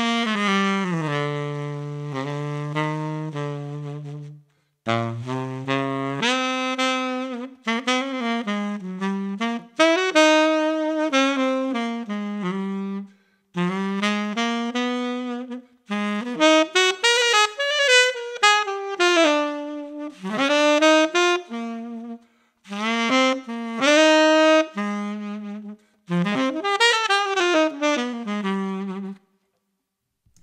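Unaccompanied tenor saxophone playing a jazz-ballad line in several phrases with short breath gaps. It opens on held low notes, then mixes slow melody with quick double-time runs to show the implied double-time feel of a ballad.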